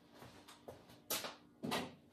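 Glazed stoneware mugs being handled: a few light knocks, a sharp clack about a second in and a duller knock just after.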